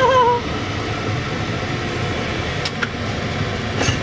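A steady mechanical hum and hiss with no rhythm, and a brief voice sound in the first moment.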